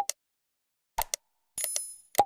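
Subscribe-animation sound effects: two short mouse-click sounds about a second apart, then a small notification bell ringing briefly near the end.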